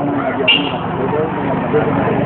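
Outdoor ambience: indistinct voices over a steady background noise, with a brief high-pitched sound about half a second in.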